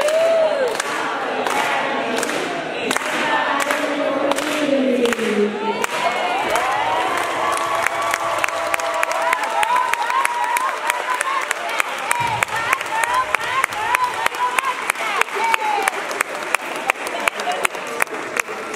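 A child's voice singing through a microphone, ending on a falling phrase about five seconds in. An audience then applauds and cheers, with whoops over steady clapping that carries on to the end.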